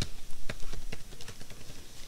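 A few light, irregular clicks from laptop keys being pressed, over a low room hum.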